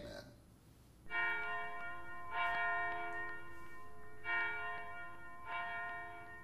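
A bell struck four times, about a second in and then every second and a half or so, each strike ringing on with several steady tones into the next, marking a pause between parts of the prayer service.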